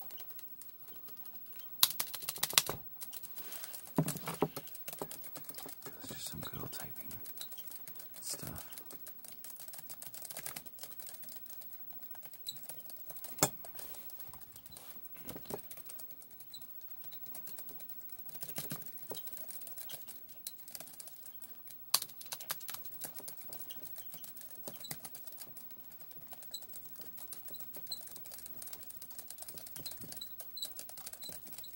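Fingers tapping and clicking on a hard object in quick, irregular strokes, like typing, with a few sharper, louder clicks scattered through.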